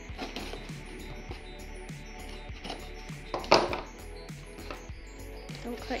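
Background music with a steady beat, over a utility knife blade scraping and slicing packing tape on a cardboard box, with one loud, short scratch of the blade about three and a half seconds in.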